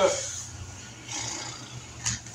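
Masking tape and masking film being worked by hand on a car body: a soft rustling hiss about a second in, over a low steady hum.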